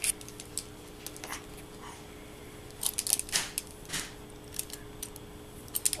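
Scattered light clicks and clacks of small plastic baby toys being handled and knocked together, busiest in the middle stretch, over a faint steady hum.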